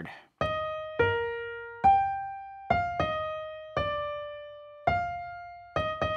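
A simple single-line melody played on a piano-type keyboard: about eight notes, one at a time, each struck and left to fade. It is a C-major tune transposed up a minor third into E-flat major.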